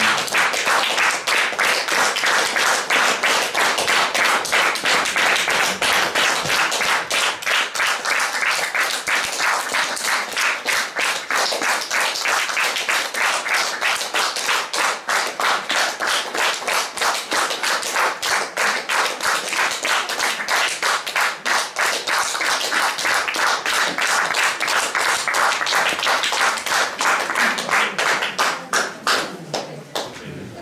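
Small seated audience applauding in a room, the hand claps falling into a steady shared rhythm partway through and dying down near the end.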